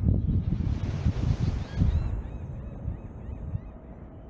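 Outdoor beach ambience: uneven low rumble of wind on the microphone, a brief swell of hiss in the first half, then a quick series of short bird chirps about halfway through.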